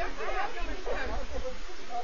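Several people's voices together over a steady hiss, with a low rumble through the first second and a half.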